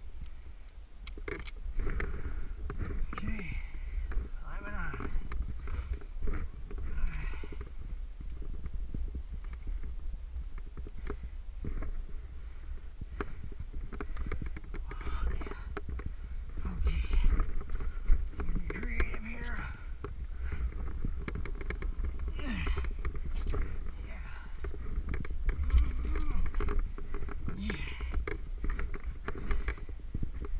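A climber's short breaths and wordless vocal sounds, with scattered clicks and scrapes of hands and climbing gear against rock, over a steady low rumble on the microphone.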